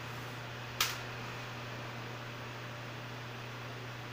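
A steady low hum with a single sharp click about a second in, as hands handle the loosened cover bolts of an electronic diesel injection pump on a workbench.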